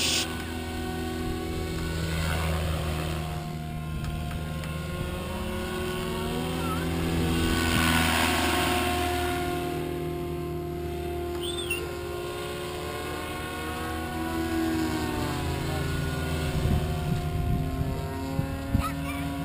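Goblin 700 RC helicopter flying overhead: a steady whine of motor and rotor that shifts in pitch several times as it manoeuvres, swelling with a whoosh of the blades about eight seconds in.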